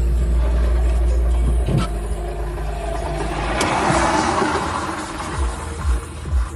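Low road and engine rumble of a moving car heard from inside the cabin. A heavy dump truck passing in the oncoming lanes makes a noisy swell that peaks about four seconds in.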